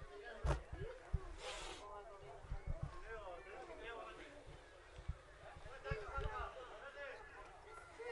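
Faint voices of several people talking and calling on and around a football pitch, with a few short low thumps.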